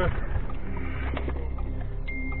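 Steady low rumble and hiss of a car cabin as picked up by an in-cabin dash cam, with a few faint knocks.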